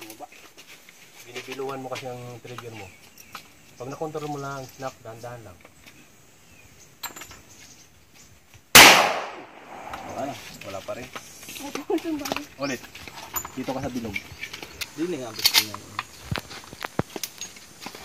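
A single loud, sharp handgun shot about nine seconds in, with a short ringing tail. A fainter sharp crack follows later.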